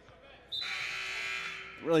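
Gym scoreboard horn sounding once, a steady electric buzz that starts suddenly about half a second in and lasts a little over a second.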